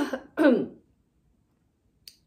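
A woman's voice: two short vocal sounds with a falling pitch in the first second, a drawn-out interjection "ну" and a brief throat-clearing-like sound, then a pause of about a second.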